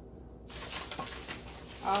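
Rustling and crinkling of a paper grocery bag being rummaged through for the next item, starting about half a second in. A woman's voice begins near the end.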